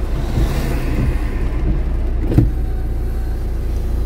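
Windshield wipers sweeping washer-wet glass, heard from inside the car over the steady low hum of its idling engine, with a hiss in the first second. A single sharp knock about two and a half seconds in.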